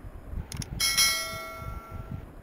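A short click, then a bright notification bell chime that rings out and fades over about a second, over a low rumble: the click-and-ding sound effect of a subscribe-button animation, the bell marking notifications switched on.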